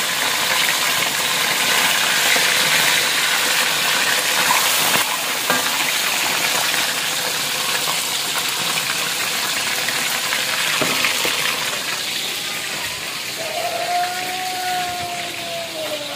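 Whole tilapia deep-frying in hot oil in a wok: a steady sizzle, easing a little near the end, with a few light knocks of a metal spatula.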